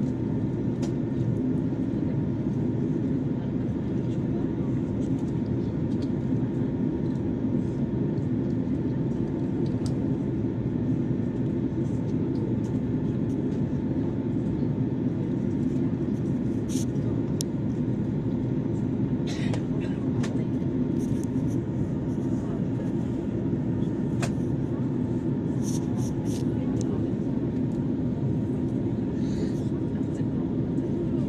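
Airliner cabin noise during descent for landing: a steady low rumble of engines and airflow heard from inside the cabin, with a faint steady hum over it and a few light clicks in the second half.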